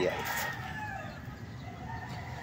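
A rooster crowing: one drawn-out call that slowly falls in pitch and fades out about a second in.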